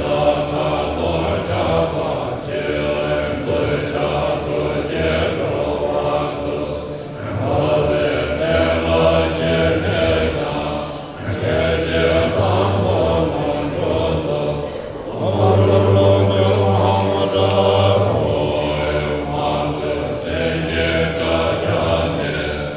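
Group of Tibetan Buddhist monks chanting a liturgy together in low, deep voices, in long sustained phrases broken by short pauses for breath, swelling fuller a little after the middle.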